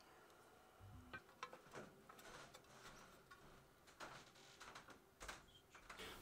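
Near silence, with faint scattered light clicks and ticks from small parts being handled.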